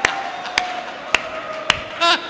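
Sharp, evenly spaced taps or claps, about two a second, over a faint held tone.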